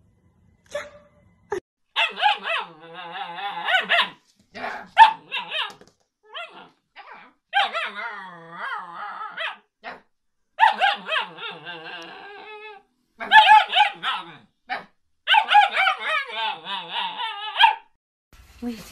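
Husky-type puppy vocalising in a run of high, wavering calls, some long and drawn out like howls, others short yips, broken by brief pauses.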